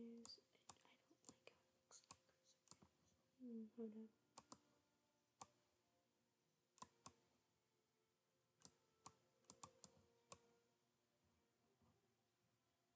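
Faint, irregular clicks of a computer mouse, about twenty of them scattered over the first ten seconds and stopping near the end.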